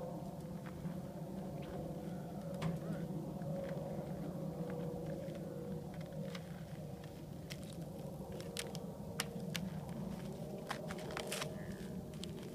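Shoes crunching and scraping on a glaze of ice in short, scattered crackles, which come more often in the second half, over a steady low background hum.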